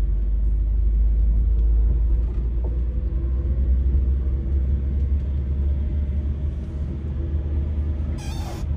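A car's engine and tyre noise heard from inside the cabin while driving slowly along a street: a steady low rumble.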